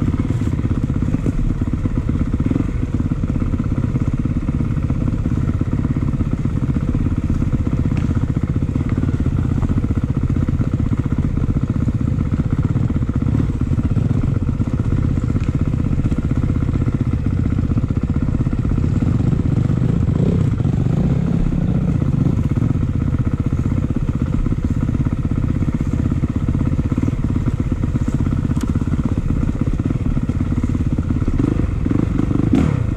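Dirt bike engine running steadily as the bike is ridden along a rocky forest trail, heard close up from a camera on the rider's own bike.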